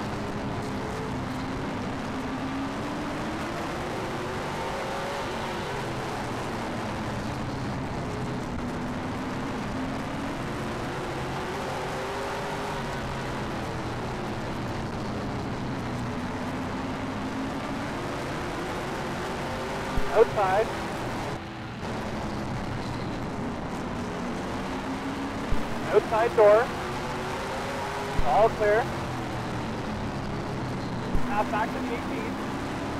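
A late model stock car's V8 engine running at racing speed, heard from inside the car. Its pitch rises down each straight and falls into each turn, every several seconds.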